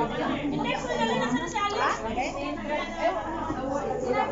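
Chatter of a group of women talking over one another, in a large hall.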